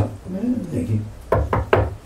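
Three quick knocks, about a fifth of a second apart, of a hand striking the lectern, picked up by the lectern microphone.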